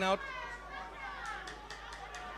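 Faint distant shouting and chatter of rugby players and spectators, with a few faint knocks.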